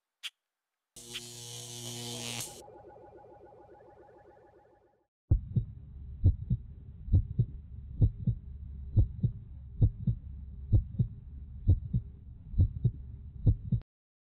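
Intro sound effects: a click, then a short burst of static-like noise with a buzzing tone that fades away, then from about five seconds in a steady low hum with paired thumps just under once a second, like a heartbeat. It stops suddenly near the end.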